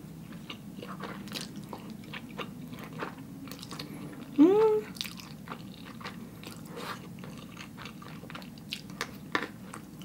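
Close-up mouth sounds of a person eating black bean noodles (jjajangmyeon): chewing with many small wet clicks. About four and a half seconds in there is one short hum that rises in pitch, an 'mm' of enjoyment.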